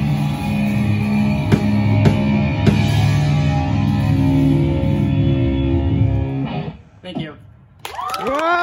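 Live rock band of electric guitars and drum kit playing, with crashing cymbal hits, until the song stops about six seconds in. A short gliding shout follows, then it goes briefly quiet.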